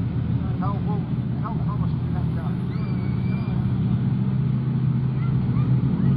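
Several speedway race cars' engines running together at slow rolling speed, a steady drone that grows a little louder as the bunched field comes round the dirt oval.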